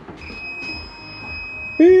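A steady high-pitched electronic tone, joined near the end by a much louder, lower buzzing tone that starts and stops abruptly after under a second.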